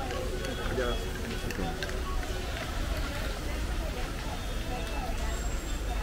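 Restaurant background of indistinct voices talking, over a steady low hum, with a few light clicks of tableware.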